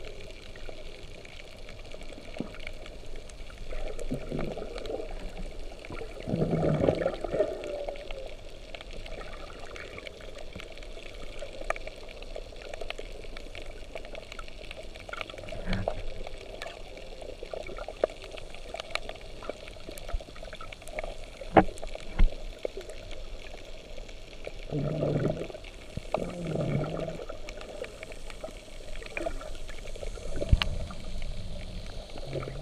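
Underwater sound picked up by a submerged camera: a steady muffled wash of moving water, with several louder muffled surges and a few sharp clicks, two of them loudest about two-thirds of the way through.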